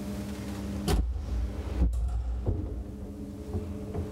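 Old Poijes & Wettermark traction elevator in operation: a steady machine hum is broken about a second in by a clunk and a low rumble, with two more clicks, before the hum comes back.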